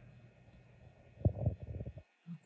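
Handling noise: a few soft low thumps about a second in, from the camera and doll being moved by hand, over a faint steady hum.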